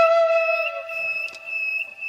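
Flute background music. A long held flute note slides slightly down and fades out about two-thirds of a second in, leaving a thin high steady tone while the music thins out toward the end.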